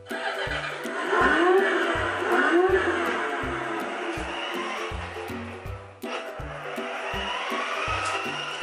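Electronic motorbike engine sound effect from a child's battery-powered ride-on toy motorcycle, starting suddenly as a dashboard button is pressed, with rising and falling pitch sweeps; it drops out briefly about six seconds in and starts again. Background music with a steady beat runs underneath.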